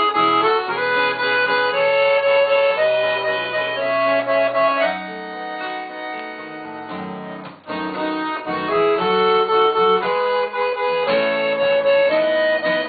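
A piano accordion and an acoustic guitar playing an instrumental passage of a gaúcho folk song, the accordion carrying held melody notes and chords. About five seconds in, the bass notes drop out and the playing softens for a couple of seconds before the full sound returns.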